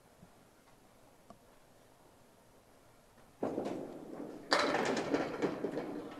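A candlepin bowling ball hits the lane about three and a half seconds in and rolls. About a second later it strikes the wooden pins, which clatter as they are knocked down and scatter across the pin deck.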